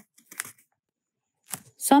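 A pause in Nepali speech read aloud: a short, soft sound about half a second in, then near silence, and the voice starts again near the end.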